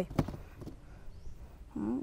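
Wax apples knocking against each other as a few are lifted from a heaped pile of fruit: a few short knocks just after the start, then faint handling.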